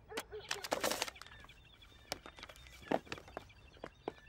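A run of short, soft clicks and rustles, several close together in the first second and a few scattered later: handling sounds as Sam reaches into the fire engine's cab for his safety leaflets.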